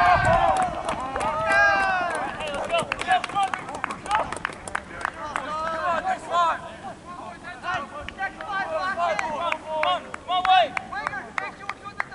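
Soccer players and spectators shouting short calls over one another, loudest in the first second, with scattered sharp knocks among the voices.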